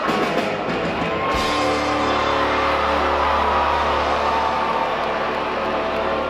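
Live rock band with distorted electric guitars, bass and drum kit: drum hits for the first second or so, then the band holds one sustained chord that rings out with a steady low bass note.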